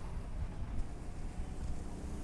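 Pride Quantum Edge 3 Stretto power chair driving, its electric drive motors giving a faint steady hum under a low wind rumble on the microphone.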